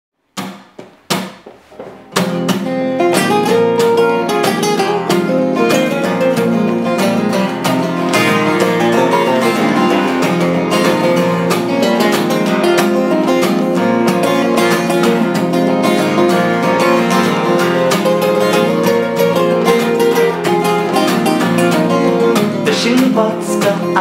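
A steel-string and a nylon-string acoustic guitar playing a duet intro with a Spanish feel. A few separate strums sound in the first two seconds, then both guitars play steadily together.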